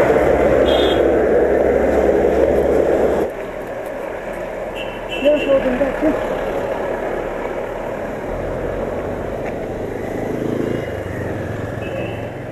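Street and traffic noise from a bicycle ride along a wet road: a loud steady engine rumble for the first three seconds cuts off suddenly, leaving lower road noise.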